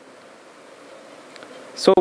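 A pause in a man's speech: faint steady hum of room tone through a microphone, then his voice returns with "so" near the end.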